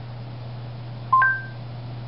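Google Home smart speaker giving a short two-note electronic chime about a second in, a lower note then a higher one, acknowledging the spoken question just before it answers. A steady low hum runs underneath.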